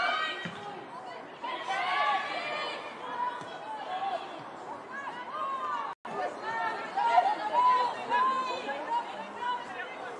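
Voices calling and shouting across a football pitch, with background chatter. The sound cuts out for an instant about six seconds in.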